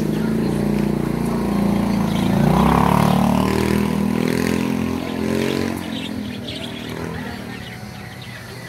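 A motor vehicle engine passing close by, growing louder to a peak about two and a half seconds in, then fading away over the next few seconds.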